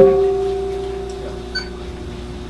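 A Buddhist bowl bell is struck once and rings with a clear tone and a few overtones, fading slowly. A light metallic clink comes about one and a half seconds in.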